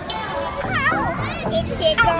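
Children's voices at play, with a high, wavering squeal about a second in, over background music.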